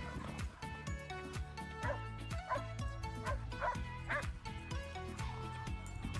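A dog barking about five times in quick succession, a few seconds in, over background music.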